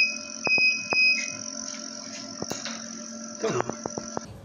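Electronic equipment alarm beeping fast and high-pitched, about two and a half beeps a second, over a steady high electrical whine. The beeping stops a little over a second in, and a few sharp clicks follow near the end.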